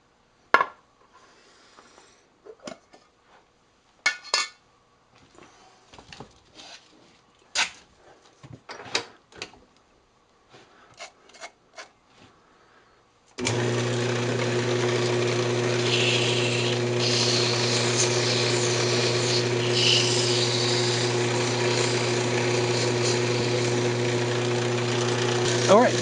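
Scattered clicks and knocks of handling while the wood lathe is stopped. About halfway through, the lathe motor switches on suddenly and runs with a steady hum, and a couple of hisses come from fine 600-grit sandpaper pressed with wax against the spinning cocobolo.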